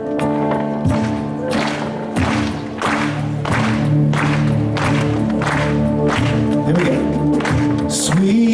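Acoustic guitar strummed in a steady rhythm, chords ringing under regular strokes a little more than once a second: the instrumental introduction to a worship song, with a voice coming in at the very end.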